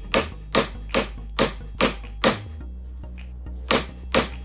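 Claw hammer tapping repeatedly on a wiper arm's retaining nut, metal on metal, to knock the arm loose from its tapered pivot post, about two and a half taps a second. Six taps come, then a pause of about a second and a half, and the tapping starts again near the end.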